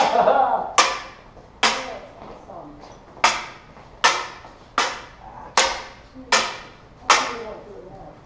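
LED lightsaber blades clashing blade on blade in a steady drill rhythm. About nine sharp clacks come roughly one every 0.8 seconds, with one beat missed about two and a half seconds in.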